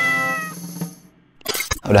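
A cat's meow closing a short intro jingle, fading out within the first second. A few brief clicks follow just before speech begins.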